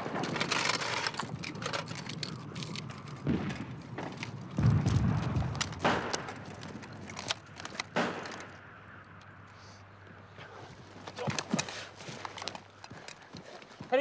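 Battle gunfire: rapid machine-gun bursts and single shots, with a loud, deep blast about five seconds in; the shooting thins out in the second half to a few scattered shots.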